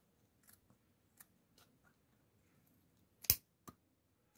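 Steel scissors trimming the protruding edge of a freshly glued leather insole in a sandal. A few faint clicks of the blades come first, then one loud, sharp snip a little over three seconds in, with a lighter snip just after.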